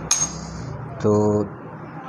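A single sharp metallic clink with a short high ringing, from the steel needle plate of a Brother industrial sewing machine being lifted off and put down.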